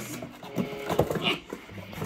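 Small cardboard box being handled and pulled open, with short knocks and scrapes of the cardboard.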